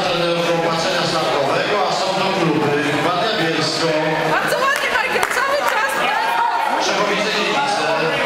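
Several people talking at once in a large sports hall, men's voices most prominent: continuous crowd chatter.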